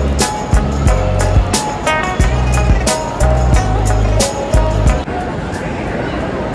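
Background music with a steady beat, heavy bass notes and a melody. It cuts off suddenly about five seconds in, leaving a steady hum of background noise.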